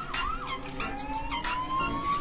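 Hip-hop backing track playing: a quick, even hi-hat-like tick pattern, short whooping pitch swoops, and a slowly rising siren-like tone through the second half.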